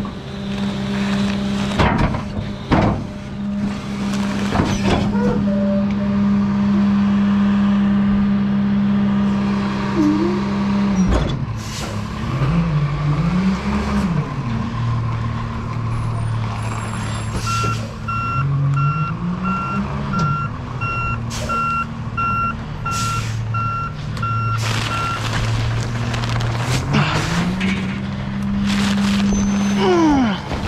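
Rear-loader garbage truck's diesel engine running at a steady raised speed, with a few knocks early on. About eleven seconds in, the engine drops and then rises and falls as the truck moves off. In the second half its backup alarm beeps steadily for about eight seconds while the truck reverses.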